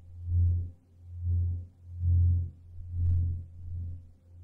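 Ambient meditation music: a deep low tone that swells and fades about once a second.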